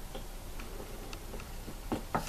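A few faint, irregularly spaced clicks and taps, handling noise from styrofoam spreading boards and a pin-studded foam block being moved.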